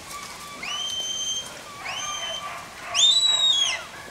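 Three whistled herding commands to a working border collie. Each is a held high note of about a second that slides up at its start; the third is the highest and loudest and steps down in pitch before it ends.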